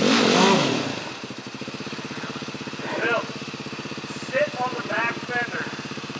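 Single-cylinder enduro dirt bike climbing a wet, rutted gully. Its revs rise and fall in the first second, then it settles into a steady, low-rev chug.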